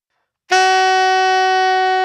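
Alto saxophone playing one steady held note, the written D♯/E♭ fingered with the side key and octave key: the flat fifth, or blue note, of the A blues scale. It starts cleanly about half a second in and holds on.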